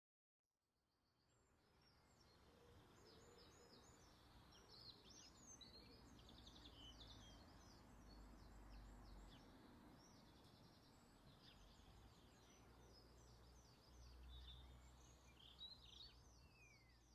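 Faint outdoor ambience of many small birds singing, with rapid short chirps and trills over a low rumble, fading in over the first couple of seconds.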